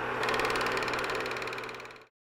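Film projector sound effect: a steady mechanical whir with a low hum and rapid, evenly spaced clicking, fading out near the end.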